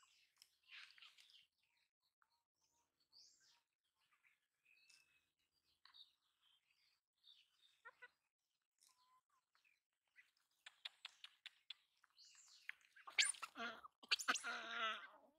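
Faint, scattered bird chirps and short whistled glides over near-quiet outdoor background, with a quick run of clicks and some louder crackling near the end.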